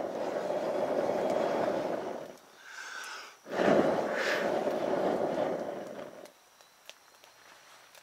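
A man blowing hard at an angle across the rim of a steel bucket holding a small wood fire, two long breaths of about three seconds each with a short pause between, forcing air down to the base of the fire so the flames flare up high.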